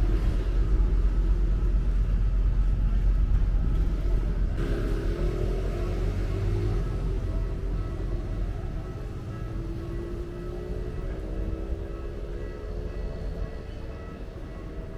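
Low rumble of street traffic, strongest at first and fading over the last several seconds, with faint wavering tones above it.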